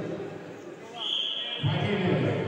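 Voices in a large sports hall, dipping briefly, with a short high steady tone sounding about a second in.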